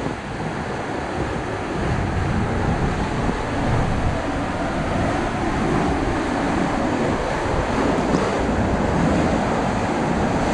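Water rushing and splashing around an inflatable ring tube as it slides down an enclosed water-slide tube, getting a little louder about two seconds in.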